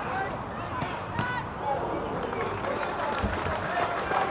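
Live pitch-side sound of a football match: scattered voices of players and a small crowd calling out across an open ground, with a few short sharp knocks.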